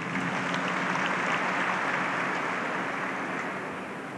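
Audience applauding, the clapping slowly dying away towards the end.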